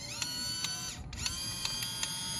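Pentax PG202 compact film camera's motor rewinding the film: a small electric whine that rises as it spins up, then runs steadily with a click about four times a second. It cuts out about a second in and starts again straight away, as the rewind runs only while the button is held down.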